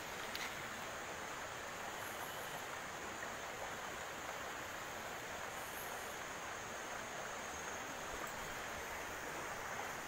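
Faint, steady rush of water flowing among the boulders of a rocky stream.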